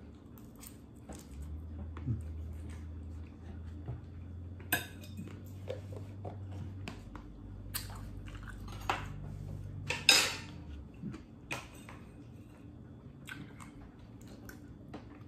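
Knife and fork clinking and scraping against a plate during a meal, with chewing between. The sharpest clinks come about five, eight and ten seconds in.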